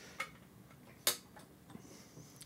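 Trumpet parts being handled: a faint click just after the start and a sharper, louder click a little over a second in, followed by a few tiny ticks, as valve slides are taken off and set down.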